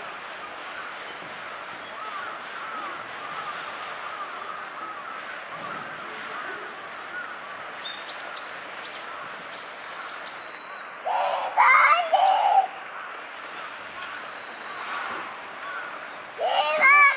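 Faint background murmur of voices, with a few short bird chirps about eight to ten seconds in. Near the end a child's voice calls out loudly for about a second and a half.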